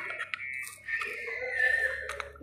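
A few light clicks and scrapes as new drum brake shoes and their coil return springs are handled on the rear brake backing plate of a Royal Enfield Classic 350.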